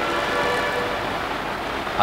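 Steady background hiss with faint humming tones running under it.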